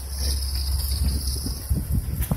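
Wind buffeting the microphone outdoors, a steady low rumble, with a faint high hiss over it.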